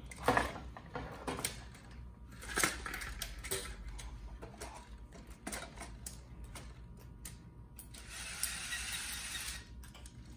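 A VEX competition robot's metal frame and gears being handled by hand, with scattered clicks and knocks. Near the end comes a scraping hiss lasting under two seconds as the robot is turned on the foam field tiles.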